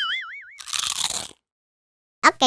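Cartoon sound effects: a wobbling, warbling tone for about half a second, then a short crunching noise that cuts off sharply, followed by silence.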